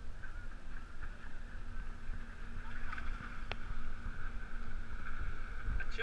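Wind on the microphone and water slapping against a pedal catamaran's floats, with the steady drone of a distant motorboat towing a banana boat. A single sharp click comes about halfway through.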